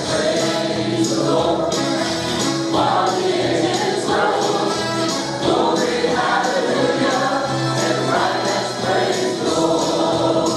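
A church congregation singing a gospel praise song with instrumental accompaniment, steady and continuous.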